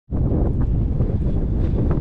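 Wind buffeting the camera's microphone: a steady, loud low rumble with no clear tone.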